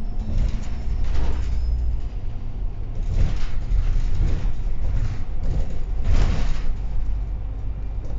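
Interior of a moving MAN double-decker city bus heard from the upper deck: a steady low engine and road rumble, with a low steady hum that stops about two seconds in. Several short rattles and knocks from the bodywork come through along the way.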